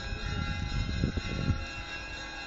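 Russian Orthodox church bells ringing, their overlapping tones hanging on steadily, under a low rumble on the microphone that peaks in a thump about one and a half seconds in.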